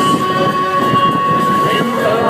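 Rushing wind and engine noise on the open deck of a speedboat running at high speed. A single high note is held steady for almost two seconds over the noise and stops shortly before the end.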